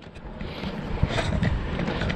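Outdoor rushing noise of road traffic and wind on the microphone, fading in and growing louder, with a few sharp clicks.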